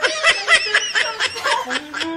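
High-pitched laughter: a quick run of giggles, several short rising-and-falling bursts a second.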